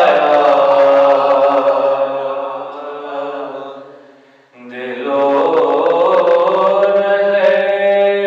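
A solo male voice chants a devotional recitation in long held notes. The voice fades out about four seconds in, stops briefly for breath, and then picks up again.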